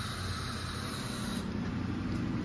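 Aerosol can of hornet spray hissing in a steady jet, stopping abruptly about one and a half seconds in.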